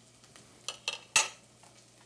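Three sharp clinks of kitchenware in quick succession, the last the loudest, over a faint sizzle of grated ginger and garlic in oil in an enamelled pot.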